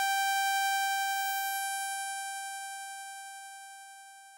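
A single held synthesizer note in an electronic dub track: one bright, buzzy tone, steady in pitch, slowly fading away.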